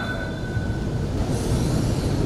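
A pause in a woman's melodic Quran recitation: the last held note fades away in the first second, leaving a low steady background rumble, with a soft hiss near the end.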